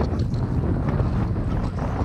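Wind buffeting the microphone, a steady heavy rumble with no distinct events.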